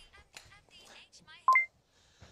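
A short two-note electronic beep about one and a half seconds in, a lower tone stepping straight up to a higher one.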